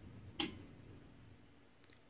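Bally Eight Ball pinball machine powering up: one sharp click about half a second in, then a couple of faint ticks near the end, over quiet room tone.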